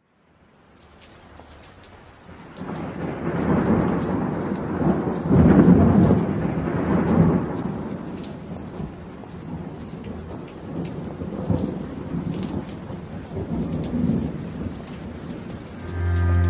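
Steady rain with rumbling thunder, fading in from silence; the heaviest rolls of thunder come a few seconds in, then the rain goes on with lighter rumbles.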